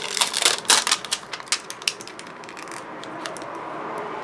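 Sheet of clear photopolymer stamps on its plastic carrier crackling and clicking as it is flexed and handled. A quick run of sharp clicks comes in the first two seconds, then it turns fainter.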